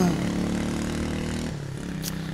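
An engine running steadily nearby, a low hum that eases off briefly about one and a half seconds in.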